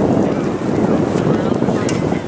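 Wind buffeting the camera microphone, a heavy, uneven low rumble, with faint shouting voices from the field.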